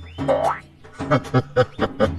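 Cartoon sound effect: a springy, pitch-gliding boing about half a second long, followed by a quick run of short sharp hits in the second half.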